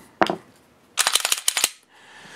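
Gen 4 Glock 19 pistol being cleared by hand: one sharp metallic click, then, about a second in, a quick run of about eight clacks from the slide and action being worked.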